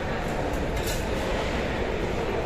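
Steady din of a busy mess hall: general chatter and kitchen noise blended into a constant roar, with a faint clink a little under a second in.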